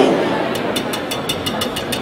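Wire whisk beating eggs and sugar by hand in a stainless steel bowl. It clicks against the bowl in a fast, even rhythm, about six or seven strokes a second.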